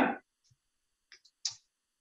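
A few faint clicks on a computer during a pause, the sharpest about a second and a half in, as the presentation slide is advanced to its next step.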